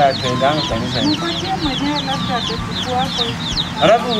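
Domestic chickens clucking continuously, with many short high chirps over the clucks.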